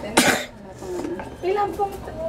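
A single short cough just after the start, followed by a few quiet spoken sounds.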